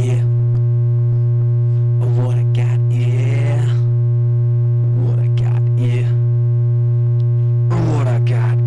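Experimental electronic music: a loud, unbroken low sine-tone drone with a ladder of steady tones above it, and short, garbled, voice-like fragments breaking in over it a few times.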